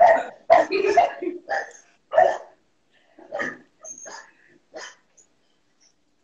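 A pet dog barking, a quick run of barks and then a few single barks about a second apart, stopping about five seconds in; it is heard through a video-call microphone. The dog is warning that someone is arriving.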